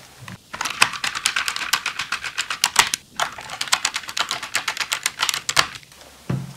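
Rapid light clicking and rattling of metal parts being handled: fingers working a perforated metal drive cover and drive bracket inside an iMac G5. The clicks come in two quick runs with a short break about halfway.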